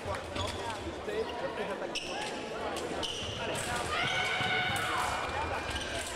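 Sabre fencers' footwork on the piste: quick stamps and thumps of lunges and advances, over the chatter of a large fencing hall. A steady electronic tone is held for about a second and a half about four seconds in.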